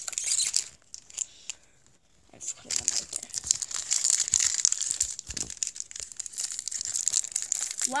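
Foil Pokémon booster-pack wrappers crinkling and crackling as they are handled and torn open, with a short lull about a second in before the crinkling resumes and runs on densely.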